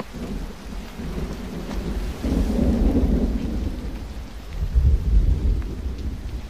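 A deep, loud rumble that starts suddenly and swells twice, once around the middle and again near the end.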